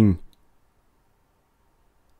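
A man's reading voice ending a word in the first quarter second, then near silence with faint room hiss.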